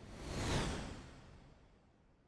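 A soft whoosh sound effect: a single swell of rushing noise that builds to a peak about half a second in and fades away over the next second.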